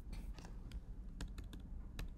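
Computer keys being tapped: an irregular run of short, sharp clicks over a low steady hum, as the PDF is navigated to another page.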